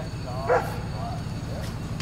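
A dog barks once, sharp and short, about half a second in, with a few fainter calls after it, over a steady low rumble.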